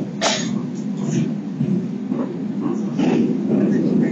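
Kintetsu Urban Liner limited express train running, heard from inside the passenger car as a steady low rumble of wheels on rail. A sharp click or knock comes about a quarter second in.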